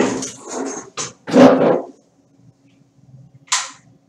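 Loud rustling bumps of microphone handling noise while the webcam or headset is being adjusted: a quick cluster of scrapes and knocks in the first two seconds, the loudest about a second and a half in, and one short brush near the end.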